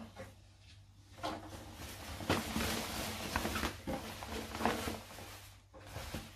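Cotton fabric rustling as a garment is handled and folded over on a table, with a few brief sharper sounds in the rustle.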